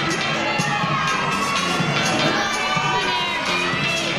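Many young voices shouting and cheering together over floor-exercise music.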